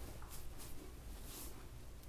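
Faint rustling of hands rubbing beard balm through a full beard, a few soft brushing strokes over a low steady room hum.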